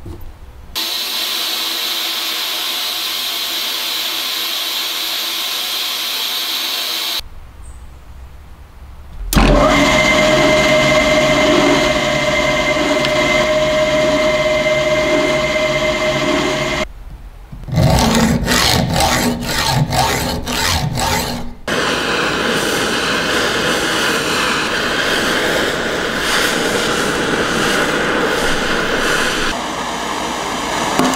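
Workshop tool sounds in short cut-together passages: steady abrasive rubbing, then a power tool running with a steady whine, then a quick run of regular back-and-forth strokes, about two or three a second, then steady rubbing again.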